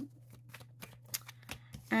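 Tarot cards being handled: a run of short, soft flicks and slides as cards are worked off the deck and one is laid down on the table, over a steady low hum.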